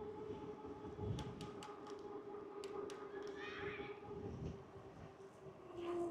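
Electric bike motor whining steadily while riding, over a low uneven rumble of wind on the microphone, with a few light clicks. The whine drops a little in pitch near the end.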